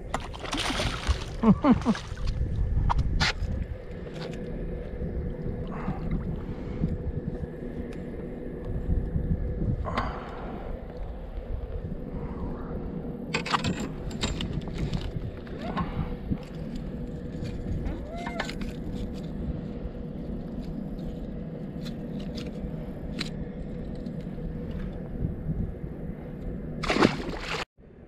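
A hooked largemouth bass thrashing and splashing at the surface beside the boat during the first couple of seconds. After that come scattered knocks and rustles from handling the fish in the boat, over a faint steady hum.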